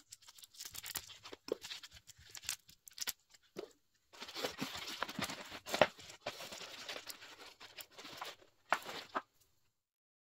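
Handling noise of potting a pineapple crown: its stiff leaves and a soft plastic nursery pot rustle and crinkle against gloved hands as the crown is set into the soil. Sporadic rustles and small clicks, then a denser stretch of rustling with a few sharper ticks, stopping about a second before the end.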